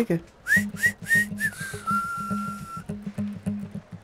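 Comic film background music: a whistled tune of four short notes, each swooping upward, then one long held note, over a plucked bass and guitar rhythm.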